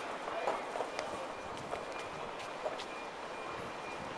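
Footsteps on a paved walkway, a few sharp steps at uneven intervals, over steady outdoor background noise with indistinct distant voices.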